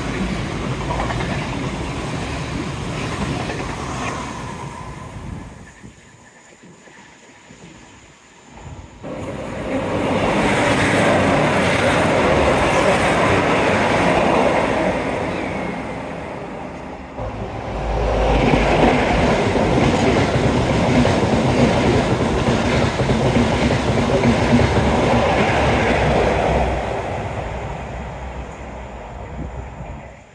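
Great Western Railway passenger train passing close by, a loud rumble of wheels on the rails that dips twice and swells again before fading away near the end.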